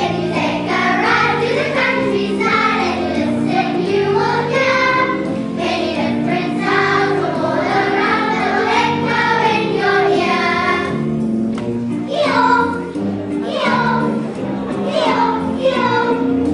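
A choir of young children singing with instrumental accompaniment.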